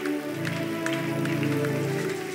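Background music of soft sustained chords, changing to a new chord about a third of a second in and then holding steady.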